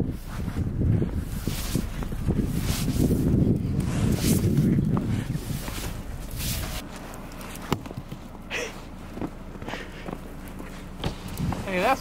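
Snow crunching and being brushed off a car, with footsteps in snow. It is dense and continuous for the first six or seven seconds, then thins to scattered crunches and clicks.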